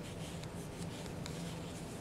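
Faint, irregular rustling and scratching of yarn being drawn through loops and rubbed by a metal crochet hook as double crochets are worked, over a steady low hum.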